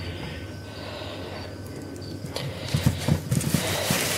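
Spray bottle misting water over the leaves of a stick insect enclosure: a soft hiss for about the first two seconds, then a few soft knocks and rustles of handling near the end.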